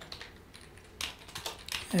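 Keystrokes on a computer keyboard: a few separate clicks from about a second in, as a line of code is typed.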